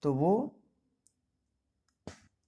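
A man's voice saying a short phrase in Hindi, then near silence broken by a single faint click about a second in.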